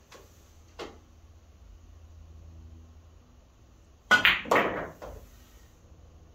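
A pool shot: a faint click of the cue tip on the cue ball a little before one second in, then near the end two loud, sharp clacks of billiard balls about half a second apart.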